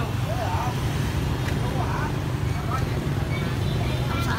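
Steady low rumble of motor-scooter street traffic, with faint snatches of voices.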